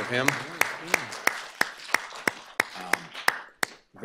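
A round of applause led by one pair of hands clapping close by, about three sharp claps a second, over lighter clapping behind. It stops shortly before the end.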